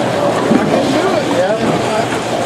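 Busy bowling-centre hubbub: many people talking at once over a steady low background rumble.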